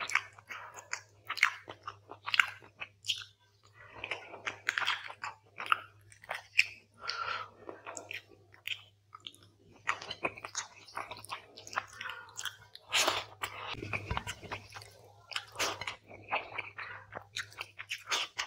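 Close-miked eating of quail curry and rice by hand: chewing and wet mouth sounds, broken by irregular sharp clicks and smacks as fingers tear and gather the food. A faint steady low hum runs underneath.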